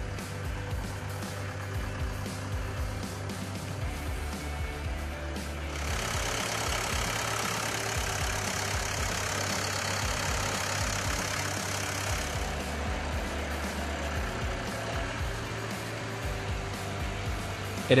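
Wacker Neuson 850 wheel loader's diesel engine running steadily with a low hum. For about six seconds in the middle a louder rush of engine and fan noise comes in, then drops back.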